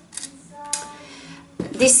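Soft clicks and knocks of small sewing supplies being handled and set down on a cutting mat: a plastic pin cushion put aside and a seam ripper picked up.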